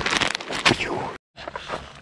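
Plastic pouch of shredded hash browns crinkling as it is handled, for about a second, then cut off suddenly.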